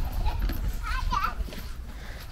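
A young child's high-pitched voice calling out briefly, about a second in, with no clear words, over a low steady rumble.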